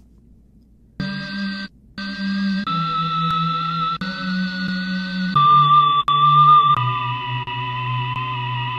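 A sampled loop slice played back from Logic Pro's Quick Sampler from the on-screen keyboard, with its pitch setting being changed: a string of held, pitched notes, each about a second long, stepping mostly downward in pitch. It starts about a second in.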